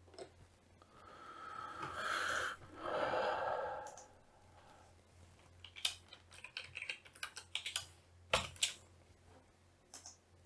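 Typing on a computer keyboard: a run of quick key clicks in the second half, with one stronger click near the end. Before them comes about three seconds of a soft rushing noise.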